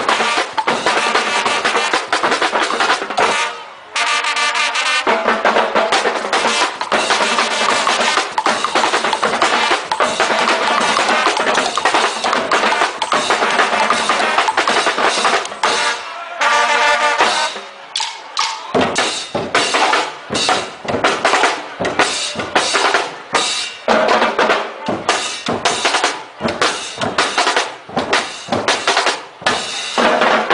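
Carnival band music driven by drums and percussion playing a fast, steady rhythm, with a short pitched melody coming through about four seconds in and again around the middle.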